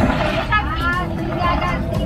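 People talking at a busy open-air food stall, over a steady low rumble.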